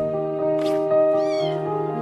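A kitten gives a short, high-pitched mew that falls in pitch, a little over a second in, over steady background music.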